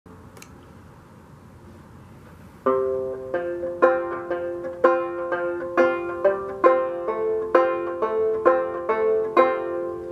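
Fretless open-back banjo, a Fairbanks Special #4, picked by hand. After about two and a half seconds of quiet, it plays a slow run of single plucked notes, about two a second, each ringing on into the next.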